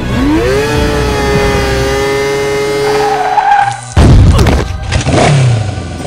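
Animation sound effects: a pitched tone sweeps up and holds steady for about three seconds, then two loud crashing impacts follow about a second apart, the second with a falling pitch, as a LEGO minifigure is knocked over.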